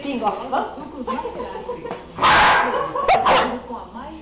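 A young blue heeler (Australian Cattle Dog) barking: one loud bark a little past halfway, then two shorter barks close together about a second later.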